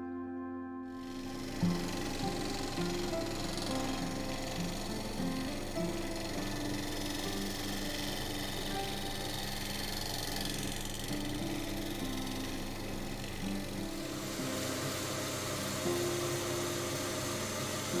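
Wood lathe running, with a bowl gouge cutting the outside of a spinning silver birch bowl; it starts about a second in, under background music.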